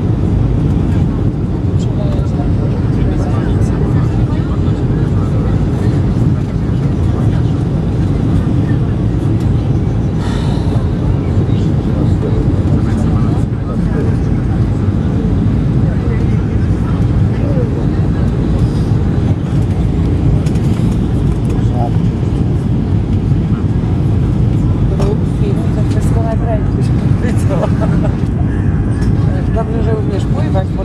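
Steady cabin noise inside an Airbus A320-family airliner on its landing approach: a constant low rumble of engines and airflow, with faint passenger voices beneath it.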